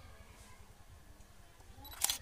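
Near silence: faint outdoor background hum with no distinct event.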